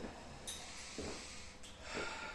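A person breathing out audibly, a breathy rush that starts about half a second in and fades over about a second: an exhale with effort during a Pilates reformer exercise.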